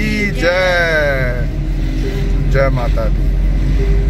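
Steady low rumble of a car driving, heard from inside the cabin. A person's drawn-out voice falls in pitch near the start, and a brief voice comes again about two and a half seconds in.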